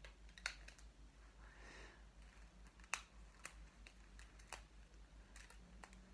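Faint, scattered small clicks and snaps as a small rubber hair elastic is handled and stretched around a lock of hair, about seven of them over a quiet room.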